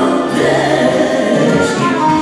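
Live band music: two women singing together through microphones, accompanied by violin and accordion.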